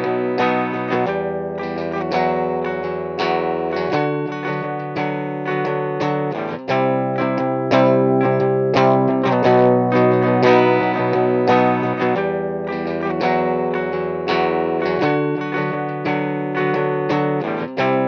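Overdriven electric guitar chords played through an amp-modelling pedal into a UAFX OX Stomp speaker emulator. A looped phrase repeats about eleven seconds later.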